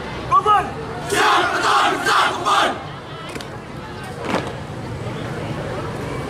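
A marching squad of young men shouting together in unison, three loud shouts in a row about a second in, after a single shouted command, over the murmur of a crowd of spectators.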